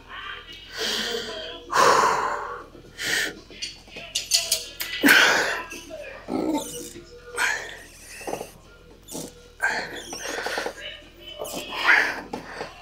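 A man's heavy breathing under effort during leg extension reps: short, sharp breaths and exhales about once a second, with background music underneath.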